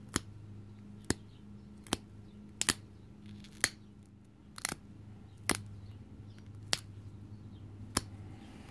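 Stone drill bit being pressure-flaked against a leather pad: sharp clicks as small flakes pop off the edge, about one a second at an uneven pace, with a quick double click near the middle. The work is taking crushed spots off the drill's edge.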